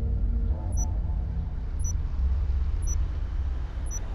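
A steady low rumble carries through, with a short, high electronic tick about once a second, like a digital clock counting off seconds.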